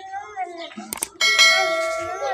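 Subscribe-button animation sound effect: a mouse click about a second in, then a bell chime that rings on steadily.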